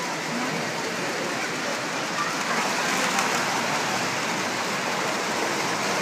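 Steady, even hiss-like background noise with no distinct events.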